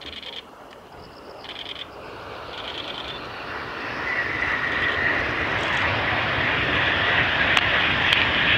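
An aircraft passing overhead: a broad rushing drone with a steady whine, growing louder from about two seconds in to the end. Before it builds, three short high trills are heard.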